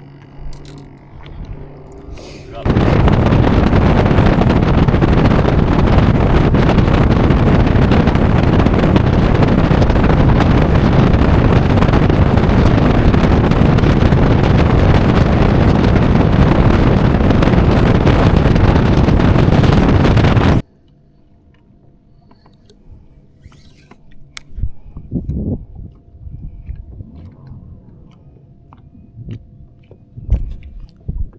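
Loud, even rush of wind and water noise on the microphone as a bass boat runs across the lake under its outboard. It starts abruptly about three seconds in and cuts off abruptly about two-thirds of the way through. A quiet low hum with a few light clicks is left after it.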